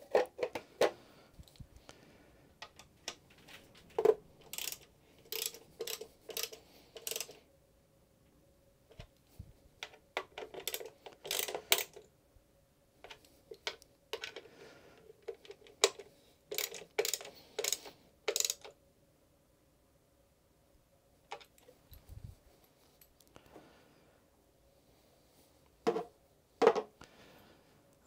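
Hands fitting a plastic engine cover over a Ford Sigma engine and handling the oil filler cap: scattered clicks, taps and light knocks of plastic, with short pauses between.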